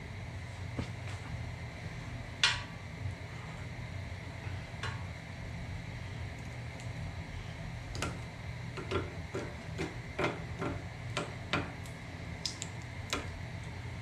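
Scattered small clicks and taps from fingers working at a motorcycle's chrome rail, peeling off an adhesive LED light strip, over a steady low hum. The clicks come more often in the second half.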